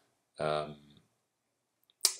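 A man's voice making one short hesitation sound, about half a second long, then a pause with a faint click near the end.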